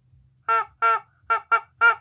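Rubber chicken toy squeezed repeatedly, giving a quick run of short squawks from half a second in, with the last one held longer.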